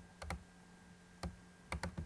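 Five faint, short, sharp clicks, mostly in quick pairs, over a low steady hum.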